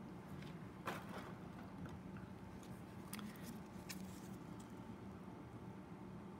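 Quiet room tone: a faint steady hum with a few small, soft clicks, the loudest about a second in.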